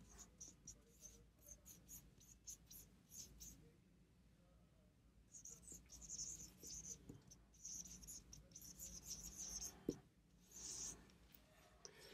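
Faint strokes of a felt-tip marker writing on a whiteboard: a run of short strokes, then a few longer ones, stopping about ten and a half seconds in.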